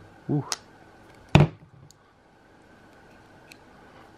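TwoSun titanium-handled folding knife's blade snapping shut once, sharply, about a second and a half in, after its front-mounted lock lever is lifted to release it. A couple of faint clicks follow.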